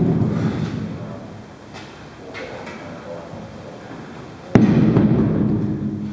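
Heavy atlas stone thudding down. A low thud fades at the start as it settles on the box, then about four and a half seconds in it hits the rubber floor with a louder thud, the loudest sound here.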